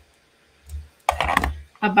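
Small crafting sounds on a tabletop: a soft bump, then, about a second in, a short burst of clicks and rustle as a glue pen is put down and a gold foil die-cut leaf is handled.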